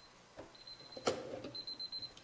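Faint high-pitched electronic beeping, roughly one half-second beep each second, with a single sharp click just after a second in.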